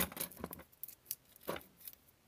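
A few small clicks and light ticks as fingers handle the electrosurgery pen's bare circuit board and metal tip, with one sharper click about a second and a half in.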